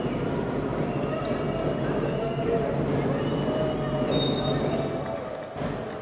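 A basketball being dribbled on a hardwood court, with the voices and din of a basketball hall behind it. The noise thins out near the end.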